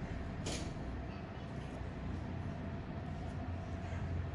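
Steady low background rumble, with one short sharp click about half a second in.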